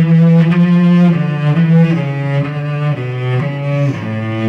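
Cello bowing a melodic passage in its low-middle register, moving to a new note about every half second.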